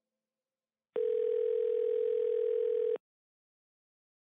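A single steady telephone tone starts about a second in, holds for two seconds and cuts off suddenly.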